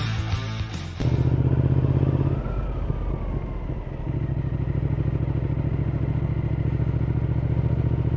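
Intro music cuts off about a second in. A Triumph Speed Twin's parallel-twin engine then runs at low speed, heard from the bike itself. It drops off briefly in the middle, then pulls evenly again.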